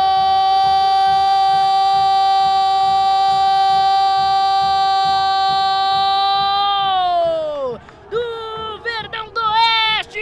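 A football commentator's long drawn-out goal cry, one held note for about seven seconds that then falls away, followed by a few short shouted words near the end.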